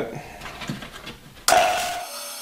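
Benchtop bandsaw switched on: a sudden loud start about one and a half seconds in, settling into a steady motor whine. Before it, only faint handling of the wood block on the saw table.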